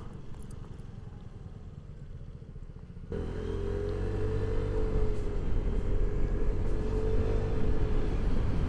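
Vespa GTS 125 scooter's single-cylinder four-stroke engine running on the move, heard from the rider's seat: a quiet low rumble at first, then louder from about three seconds in with a steady hum over the rumble.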